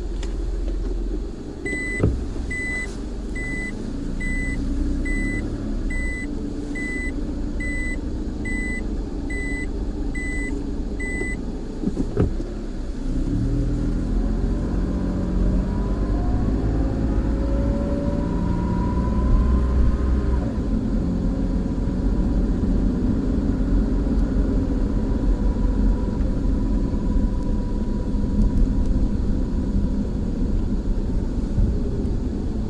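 A car's reverse-gear warning beeper sounding about a dozen times, a little more than one beep a second, over the low rumble of the car as it backs out of a parking space. It then pulls away with a rising engine whine.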